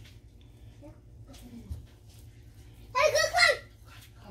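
Faint scraping of a fork fluffing cooked rice and peas in a metal pot, then a short high-pitched child's voice about three seconds in.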